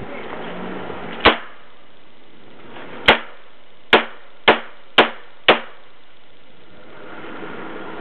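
Six shots from a Chiappa Rhino revolver. One shot comes first, then after nearly two seconds five more follow in quick succession about half a second apart.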